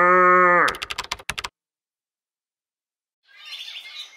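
The held last note of a rooster's crow, breaking off under a second in, followed by a quick run of sharp clicks like computer keys being tapped. Then silence, with faint bird chirps starting near the end.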